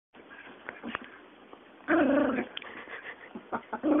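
Small dog vocalising: a half-second sound about two seconds in and a shorter one near the end, with faint rustling before.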